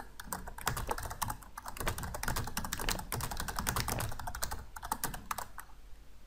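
Typing on a computer keyboard: a quick, uneven run of key clicks as a line of text is typed, thinning out near the end.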